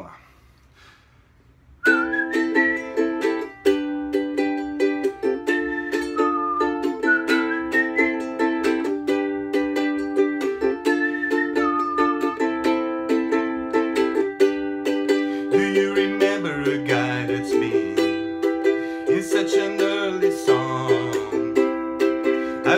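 Ukulele strummed in steady chords, starting about two seconds in, with a whistled melody above the chords. Past the middle a low voice joins in over the strumming.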